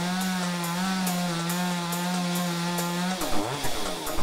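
A chainsaw running steadily at high revs; about three seconds in the revs drop and then climb again. A drum beat from background music runs faintly underneath.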